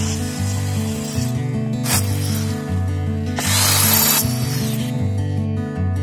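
Electric hand drill boring into a plastered wall in short bursts: a brief one about two seconds in and a longer, louder one lasting nearly a second about three and a half seconds in. Background music with a repeating bass line runs under it.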